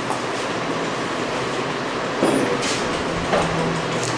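Steady, fairly loud background hiss with a faint low hum, with two brief soft rustles a little after two seconds and a little after three seconds in.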